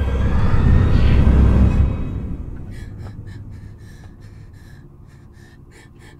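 A loud, low rumbling swell of horror-film sound design that cuts off about two seconds in, followed by a run of quick, shallow gasping breaths, about three a second.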